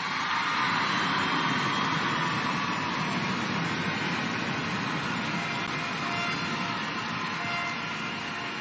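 Large arena crowd applauding, a steady even wash of sound that holds at the same level throughout.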